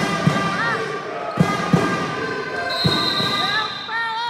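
A basketball dribbled on a sports hall floor: a handful of irregular bounces echoing in the large hall.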